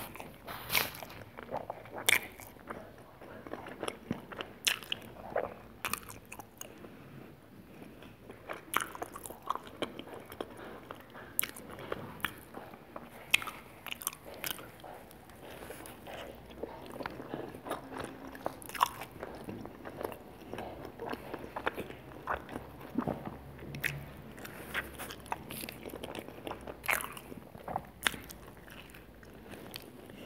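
Close-miked eating of a slice of pizza topped with fries and cheese: bites and chewing, with many sharp, irregular crunches all the way through.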